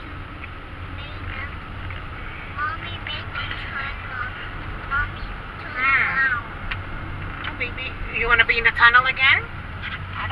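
Steady low road and engine rumble inside a moving car, under high-pitched voices talking or exclaiming, loudest about six seconds in and again from about eight to nine and a half seconds.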